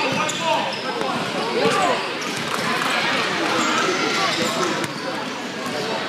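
A basketball bouncing on a hardwood gym court, with the chatter of many people in the echoing hall.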